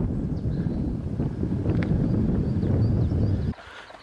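Wind buffeting the camera microphone, a loud, ragged low rumble that cuts off abruptly about three and a half seconds in. Faint high bird chirps sound above it.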